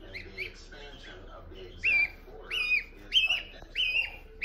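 Gosling peeping close up: faint chirps at first, then four loud, high whistled peeps about half a second apart in the second half.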